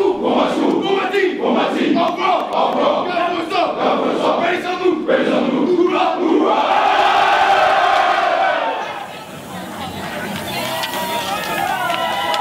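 A football team's players shouting and hollering together in a pregame battle cry. A long, held group yell about six to eight seconds in, then the shouting dies down.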